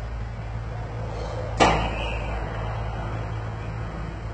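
Motorised stainless-steel bi-folding gate closing, with a steady low hum under it. A single sharp clack about one and a half seconds in is the loudest sound.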